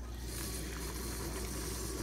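Kitchen faucet turned on, a steady stream of water running into a bowl of dry oats.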